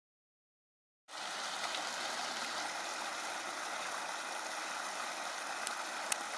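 Muddy runoff stream rushing steadily over mud and debris, starting abruptly about a second in.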